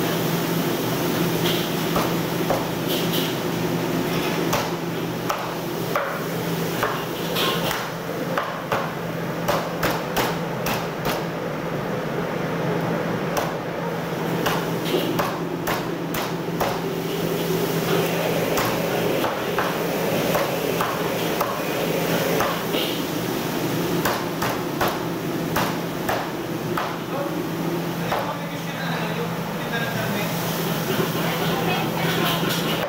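Meat cleaver chopping duck on a thick wooden chopping block: a long run of irregular, sharp chops, coming thickest through the middle stretch, over a steady low hum.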